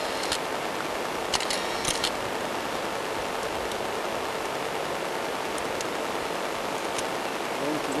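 Steady outdoor hiss, with a few short clicks in the first two seconds.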